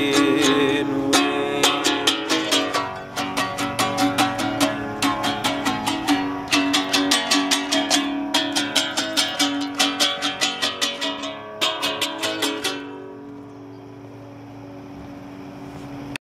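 Small lute-shaped plucked string instrument of the mandolin family strummed and picked in an instrumental coda, several strokes a second. The playing stops about thirteen seconds in, leaving a faint steady hiss.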